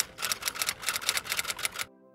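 Typewriter keystroke sound effect, a rapid run of clacks that stops abruptly near the end, over faint background music.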